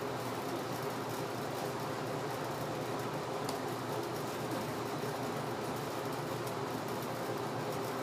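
Steady hum and hiss of background room noise, unchanging throughout.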